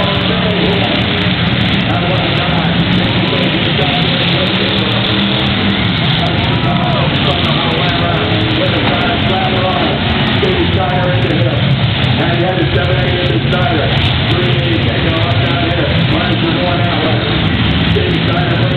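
Several demolition derby cars' V8 engines running together in a steady low drone, with a person's voice talking over them throughout.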